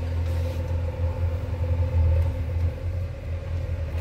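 A steady deep rumble with a faint hum over it.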